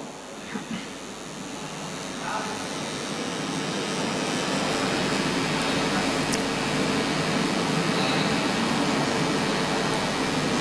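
Steady rushing background noise of a large hall, growing louder over the first four seconds or so and then holding level, with a couple of faint brief voices in the first few seconds.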